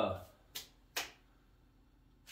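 Two sharp hand claps about half a second apart.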